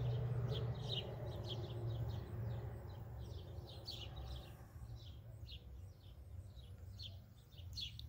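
Small birds chirping: many short, high chirps, each sliding downward, repeated irregularly, over a low steady hum.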